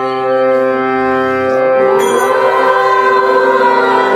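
Devotional Hindu bhajan: a woman sings a slow, ornamented line over a steady harmonium drone, her voice entering about a second and a half in. A small hand cymbal chimes once about two seconds in.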